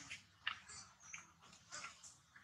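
Long-tailed macaques grooming an infant: three faint, short animal sounds, about one every half second.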